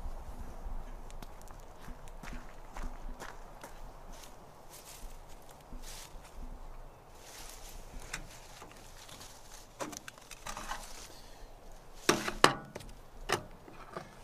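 Footsteps on wet ground and rustling through grass and ivy as a person walks and searches on foot, with irregular light scuffs. Near the end come a few louder, sharp knocks and handling noises.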